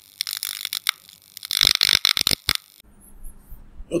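Electrical crackle-and-buzz sound effect for a neon-sign logo: sputtering hissy bursts with sharp clicks, like a neon tube flickering on, then a faint low hum near the end.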